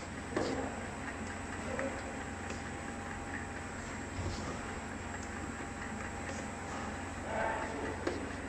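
Steady running noise of a checkweigher conveyor line with a faint high whine, and a few light knocks as cardboard tubs are set down on the belt.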